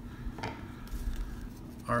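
A stack of baseball trading cards being handled and flipped through in the hands, with one sharp click about half a second in.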